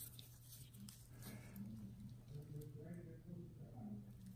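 Near silence: room tone with a steady low hum and faint, indistinct voices in the background.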